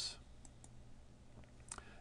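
A few faint clicks from operating the computer while the file is saved, the clearest near the end, over low room tone.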